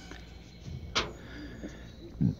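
Quiet steady background with one short, sharp click about a second in.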